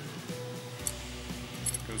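Background music with steady held notes, with a few faint light clicks as the metal snap socket and hand snap tool are handled.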